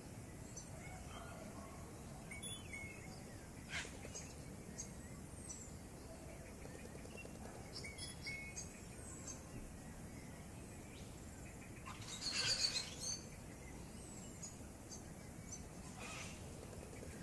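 Wild birds calling in the bush with scattered short, high chirps over a quiet outdoor background. About twelve seconds in there is a brief, louder burst of noise.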